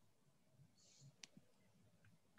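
Near silence: room tone with one faint click a little over a second in.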